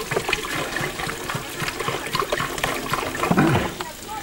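Water poured from a plastic jug into a metal pot, trickling and splashing.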